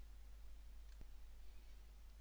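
Near silence: faint room tone with a single faint click about a second in.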